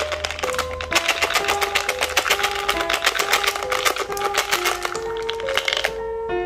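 Small orange candy cubes rattling and clattering out of a plastic container into a palm, a dense run of quick clicks that stops shortly before the end. Background music with a simple melody plays throughout.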